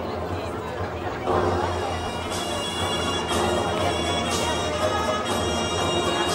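Recorded music played over a PA loudspeaker: a sustained melody over a beat that falls about once a second from a couple of seconds in.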